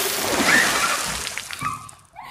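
Water in a plastic storage tub splashing and sloshing from a toy car just dropped into it, the hiss of spray and slopping water fading away by near the end.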